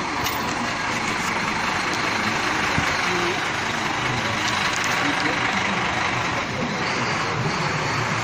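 Double-decker tour bus's diesel engine running steadily close by, a constant even noise with street sounds around it.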